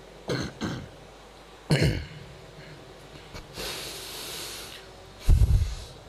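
A man clearing his throat and coughing into a close microphone in short bursts between passages of recitation. A long breath is drawn in about halfway through, and a heavier cough near the end.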